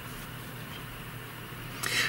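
Faint rubbing and handling of a wool yarn end and a tapestry needle between the fingers as the yarn is threaded, over steady low room hiss. A short, sharper noise comes just before the end.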